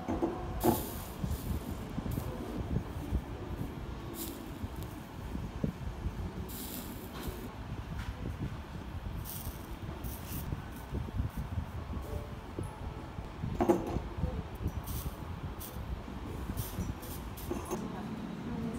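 Soldering iron on the copper-foiled seams of a stained-glass piece: faint, intermittent sizzling and crackling of flux and solder over a steady low rumble. Two light knocks, one just under a second in and another about three-quarters of the way through.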